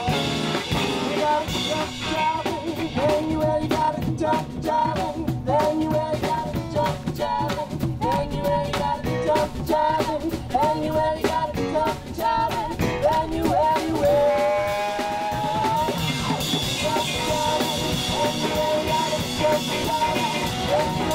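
A live band playing an upbeat rock-style number: drum kit, electric guitars and saxophones, with singers' voices carrying the melody. A long held note sounds about three quarters of the way through.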